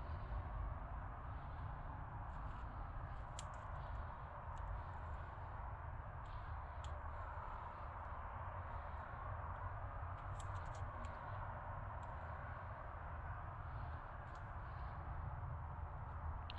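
Faint sound of a paintbrush laying off wet gelcoat on a mould surface: soft brushing with a few light ticks over a steady low background hiss.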